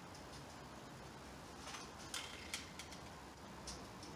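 Faint ticks and rustles of fingers picking up groups of taut warp threads on a floor loom, with a few scattered light clicks in the second half.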